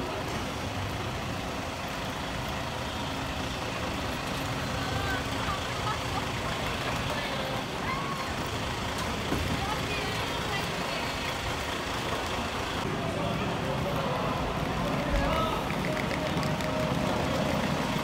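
Large coach bus idling, a steady low engine noise under scattered voices of people gathered around it, with a single thump near the end.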